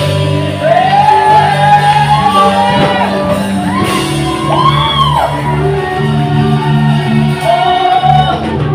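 Live church worship band, electric bass and keyboard, playing a steady song while a worship leader sings and shouts into a microphone, his voice rising and falling in long glides, with backing singers joining. The sound rings in a large hall.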